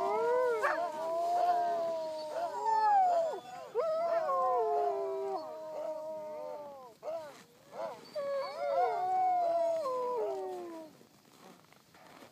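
Several huskies howling together, long overlapping calls that slide up and fall away in pitch. A brief break comes about seven seconds in, then the chorus picks up again and dies away near the end.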